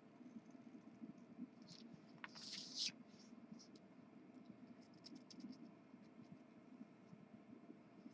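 Faint scratching of a marker tip drawing and colouring on printed fabric, with one brief louder scratch a little over two seconds in.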